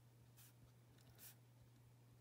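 Faint short scratches of a felt-tip pen nib on paper as small marks are dabbed in, with two clearer strokes about half a second and just over a second in. A low steady hum runs underneath.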